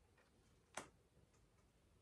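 Near silence, broken by a single short click about a second in as a tarot card is handled.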